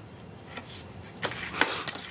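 Paper being handled and pressed flat against a tabletop: faint rustling with a few soft taps, about half a second, a second and a quarter and a second and a half in.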